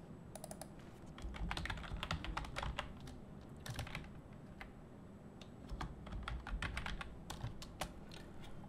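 Faint typing on a computer keyboard: a run of quick key clicks, a lull in the middle, then another run near the end.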